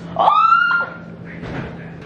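A high-pitched exclamation of "Oh!" that rises, then holds for about half a second, followed by quiet room sound with a faint steady hum.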